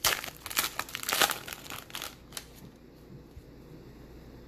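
A trading-card pack wrapper being torn open and crinkled by hand: irregular crackling bursts for about two seconds, loudest twice, then dying away as the cards come out.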